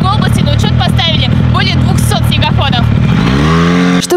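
Snowmobile engine running at a steady fast idle, then revving up near the end, its pitch rising as the machine accelerates away.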